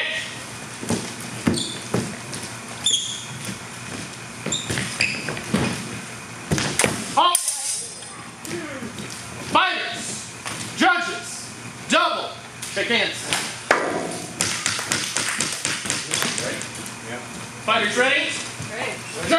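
Fencing with steel longswords: a run of sharp knocks and clashes, some briefly ringing, with short voices calling out in between.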